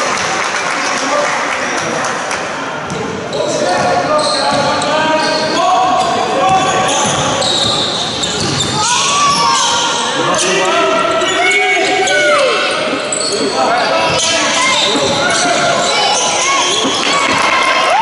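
A basketball being dribbled on a wooden sports-hall floor during play, with trainers squeaking on the court and players' voices calling out.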